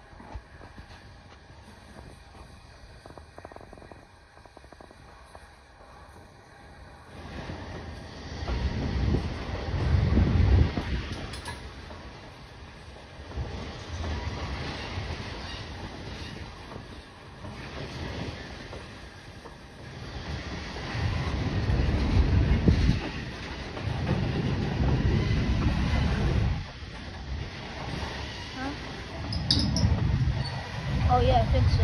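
Freight train cars rolling past on the rails, a low rumble with wheel noise that grows much louder about seven seconds in and swells and fades as the cars go by.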